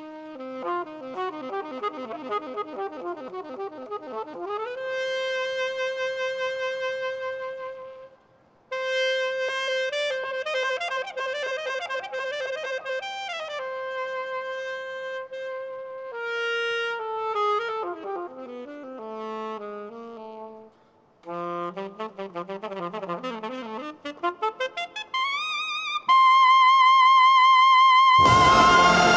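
Alto saxophone playing an unaccompanied solo passage: quick runs and held notes broken by two short pauses, ending on a loud, long high note with vibrato.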